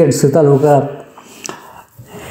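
A man's narrating voice for about the first second, then a short pause with one faint click.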